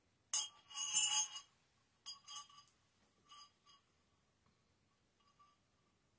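Small Tibetan ritual bells clinking and ringing: a sharp strike, a louder jangling cluster about a second in, then several fainter strikes that die away, each leaving a high, clear ring.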